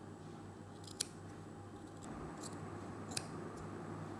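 Large steel tailor's shears cutting through cloth and piping, with a few sharp snips of the blades closing, the clearest about a second in and two more near the end.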